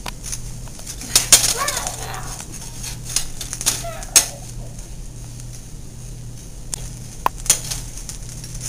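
A kitchen utensil clicking, knocking and scraping irregularly in a pan on the stove, with a few brief voices.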